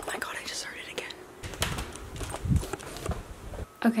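Hushed whispering and rustling, with a few dull thumps, as the camera is carried about in a hurry.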